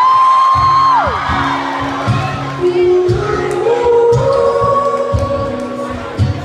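Live song on voice and strummed acoustic guitar: a sung note glides up and is held high for about a second, then acoustic guitar chords come in under further long held vocal notes.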